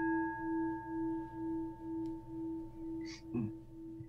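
A struck singing bowl ringing on after the strike, its tone wavering in and out about twice a second as it slowly fades. Near the end, a couple of short, soft rustling sounds.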